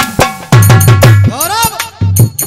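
Folk music interlude in a jikdi bhajan: hand-drum strokes at about four a second, deep in the bass, with bright metallic clinking on top. About three-quarters of the way through, a note slides up and then back down.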